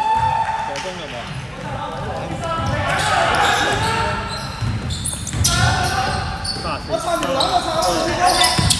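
An indoor basketball game in an echoing sports hall: a basketball bouncing on the wooden court, with players' footsteps and shoes on the floor, and players' voices; a long held call sounds in the first second.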